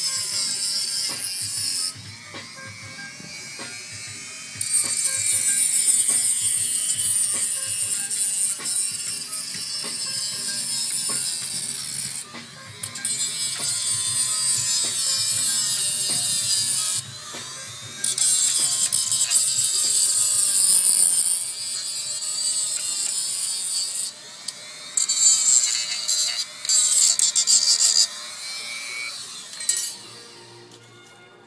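High-speed grinder cutting into a small mini bike engine, running in bursts of a few seconds with short stops, its whine wavering as the load changes. Background music with a steady beat underneath.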